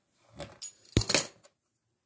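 A fluted metal pastry wheel set down on a wooden table: a softer knock, then about a second in a sharp clack with a brief metallic jingle.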